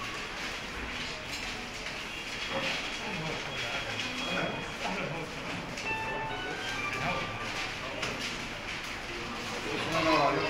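Indistinct murmur of several voices, with paper ballots rustling as they are handled and sorted.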